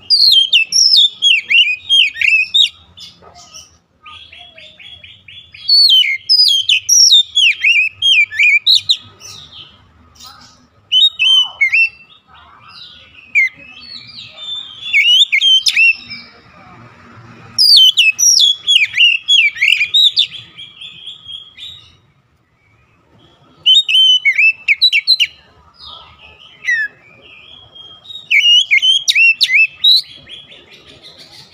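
Oriental magpie-robin singing in loud bouts of rapid, varied whistled phrases, each bout lasting a few seconds, with short pauses between them.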